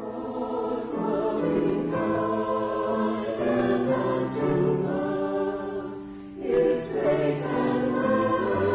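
Mixed choir of men's and women's voices singing together in sustained phrases, with a short pause between phrases about six seconds in.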